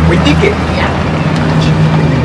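A motor running with a steady low hum, with faint voices behind it.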